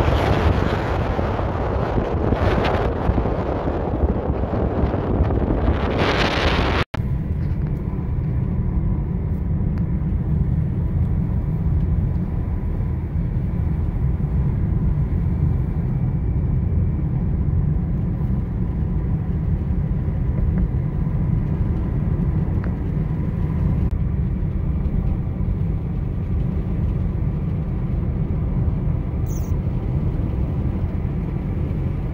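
Car driving, with wind rushing over the microphone for about the first seven seconds. After an abrupt cut it becomes a steady low rumble of road and engine noise heard from inside the cabin.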